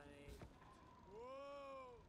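Faint, low-mixed human voice from a film scene: one long wavering call about a second in whose pitch rises then falls, with shorter vocal sounds around it.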